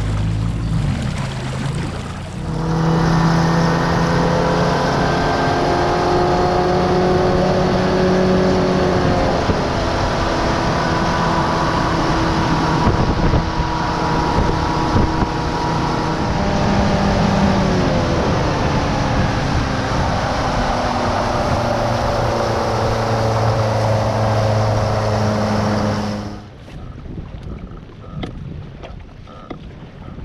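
Fishing boat's outboard motor running at speed, with water and wind rushing against the microphone; it cuts off abruptly near the end, leaving lighter wind.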